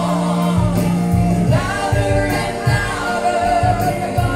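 Live gospel worship music: a woman singing into a microphone, accompanied by an electronic keyboard with sustained bass notes and a steady beat.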